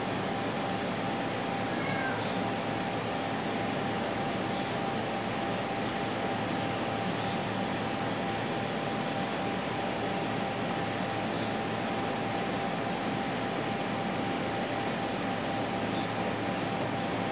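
Steady, even hiss with a faint constant hum, and a few faint clicks.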